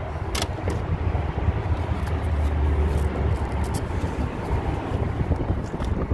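Steady low outdoor background rumble, heaviest about halfway through, with a few sharp clicks.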